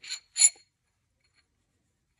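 Two light metallic clinks from the steel dimple jig and its set screws being handled on an AR barrel, a few tenths of a second apart, the second louder.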